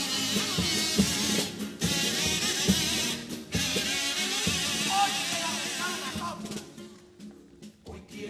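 A chirigota's instrumental pasodoble introduction: kazoos (carnival pitos) playing the tune over bombo bass drum and snare drum. The music dies down over the last two seconds.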